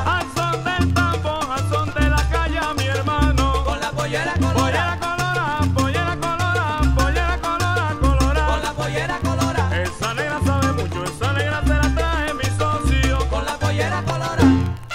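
Salsa band music from a 1970s LP: an instrumental stretch between sung verses. Bass and percussion keep a steady repeating beat under busy melodic lines from the band.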